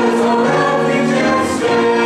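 Mixed choir of male and female voices singing a sacred choral anthem, with several sustained pitches held together.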